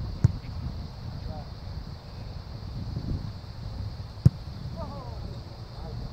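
A ball kicked twice: a sharp thump just after the start and a louder one about four seconds later, each the strike of a kicker's foot on the ball.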